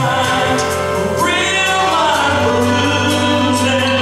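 A man singing a gospel song live into a handheld microphone over musical accompaniment. He holds long notes and slides up into a higher held note about a second in.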